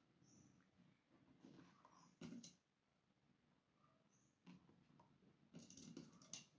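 Near silence, with a few faint, brief rustles and clicks as crocheted fabric is handled and pins are pushed through it.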